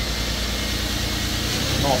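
Audi TT 3.2's VR6 engine idling steadily just after starting, freshly refitted with a new valve cover and crankcase-ventilation separator. It is no longer making the unpleasant hiss from the crankcase ventilation.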